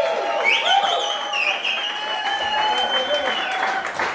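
Audience applauding and cheering as a song ends, with a high whistle held for about three seconds above the crowd.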